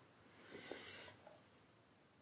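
A faint, brief animal call lasting about half a second, starting about half a second in, with a thin high whistling glide; otherwise near silence.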